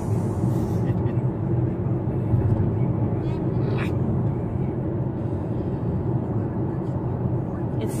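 Steady road and engine noise inside a car's cabin while it drives along a highway, an even low rumble with no change in pace.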